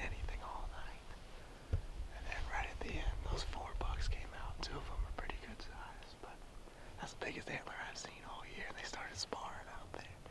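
A man whispering close to the microphone.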